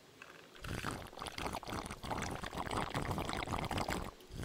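A drink sucked through a straw from a takeaway cup: a noisy, crackly slurp that starts about half a second in and runs on.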